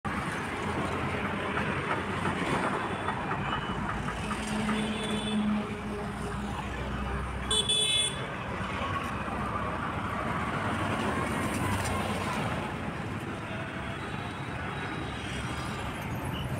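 City street traffic: cars and auto-rickshaws running past, with a short high-pitched horn toot about eight seconds in.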